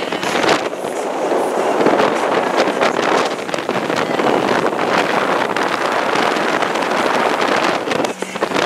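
Wind buffeting the microphone aboard a motorboat running fast, over the steady rush of the boat moving through the water.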